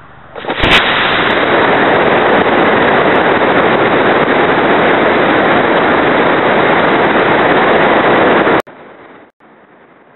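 Solid-fuel model rocket motor lighting about half a second in with a sharp crackle, then a loud, steady rushing burn for about eight seconds, heard up close from a camera riding on the boosted plane. It cuts off suddenly at burnout, leaving a faint rush of air.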